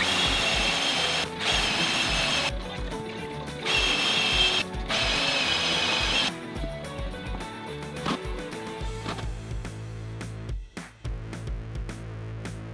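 Handheld power tool running in four bursts of one to one and a half seconds each over the first six seconds, with a high whine. Background music with a steady beat plays throughout and carries on alone afterwards.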